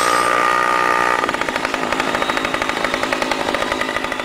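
Small motorbike engine revving, held at a steady high note for about a second, then dropping to a fast pulsing idle of about ten beats a second that fades away.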